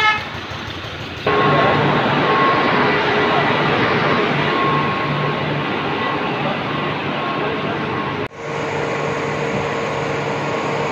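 Loud, steady machine noise of a water-pumping station's electric pumps: a continuous whine over a low pulsing hum, stepping up abruptly about a second in and shifting to a lower whine near the end.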